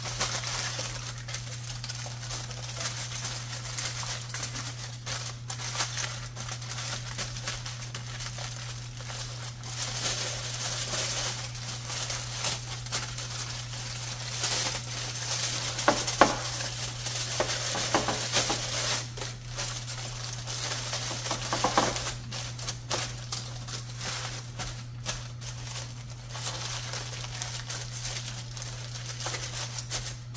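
Aluminum foil and parchment paper crinkling and crumpling as they are folded by hand over a baking pan, in an irregular crackle with a few louder crunches. A steady low hum runs underneath.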